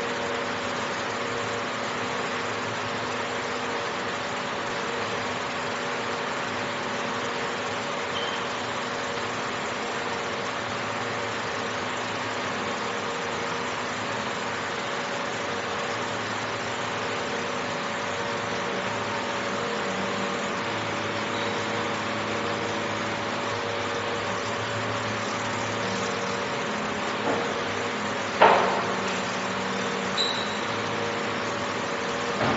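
Steady hum of a fiber laser marking machine at work with its rotary chuck turning the metal part, a few steady tones held throughout. Two short knocks near the end, the second the loudest sound.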